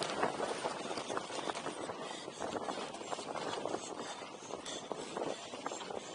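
Mountain bike descending a dry dirt trail, heard from a helmet-mounted camera: a steady rush of tyres and air with constant small clicks and rattles from the bike over the bumps.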